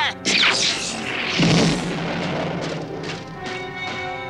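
Cartoon sound effect of a blast and an explosion blowing open a door: a sharp burst just under half a second in, then a louder, deep boom about a second and a half in that fades away, over dramatic background music.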